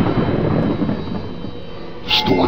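A rushing, rumbling sound effect that slowly fades.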